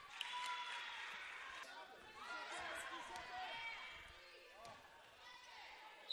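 Faint live game sound from a basketball gym: sneakers squeaking on the hardwood court, with a few ball bounces and players' voices.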